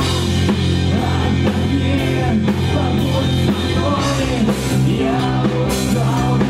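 Live rock band playing an instrumental passage: electric guitar, bass guitar and drum kit, with cymbals struck about twice a second over a steady bass line.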